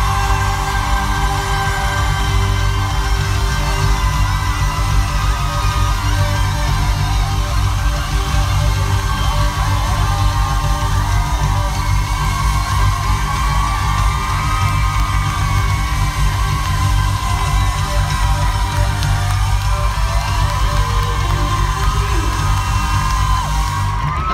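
Loud live pop-concert music through an arena sound system, heavy held bass notes running throughout, with audience whoops and cheers over it.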